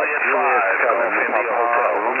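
Received single-sideband voice from an HF transceiver: stations answering a call, several voices overlapping under steady band noise, thin and narrow-sounding.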